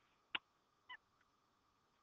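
Near silence: room tone with a single sharp click about a third of a second in and a faint, brief pitched blip near the one-second mark.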